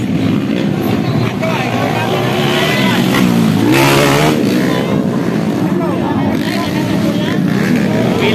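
Dirt bike engine revving during a motocross race, its pitch rising and falling as the rider works the throttle, loudest about four seconds in.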